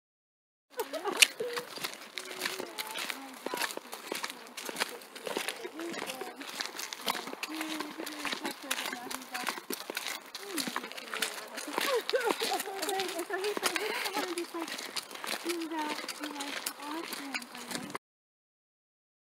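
Indistinct voices in the background, with frequent sharp clicks and rustles close to the microphone and one loud click about a second in.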